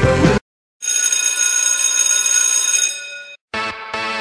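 Rock music cuts off, and after a brief silence a bell rings steadily for about two seconds, then fades away; electronic music starts shortly before the end.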